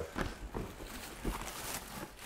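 Cardboard shoe box lids being lifted and tissue paper handled: a few soft knocks and rustling.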